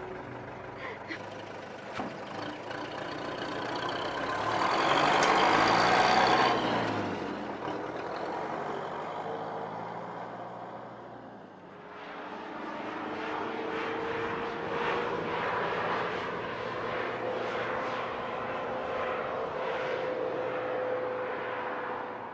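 Road vehicle noise: a vehicle passes close by, loudest about five to six seconds in, then an engine runs steadily with its pitch creeping slowly upward.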